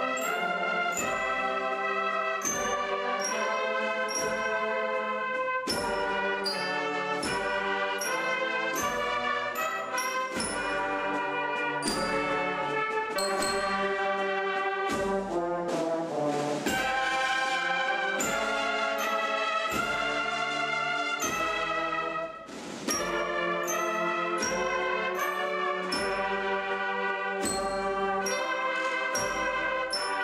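An agrupación musical, a Spanish processional brass band of trumpets, trombones and low brass with drums, playing a piece: sustained brass chords and melody over a steady drum beat. There is a brief break about three quarters of the way through before the band comes back in.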